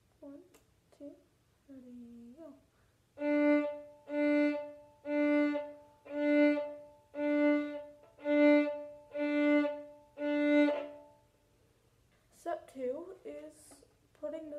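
Fiddle playing eight separate, evenly spaced bow strokes on the same note, about one a second, each note swelling and then stopping with a short gap before the next: a slow bowing exercise.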